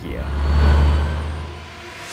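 A deep rumbling whoosh that swells to a peak under a second in and then fades away.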